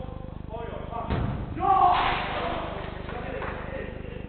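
A football struck hard once, a single sharp thud about a second in, followed by a loud shout from a player, with men's voices around it.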